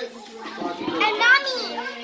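A young child's high-pitched voice, starting about half a second in, with words the recogniser could not make out.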